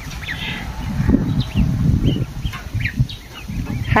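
A brood of week-old ducklings peeping: scattered short, rising chirps over a low rustling noise.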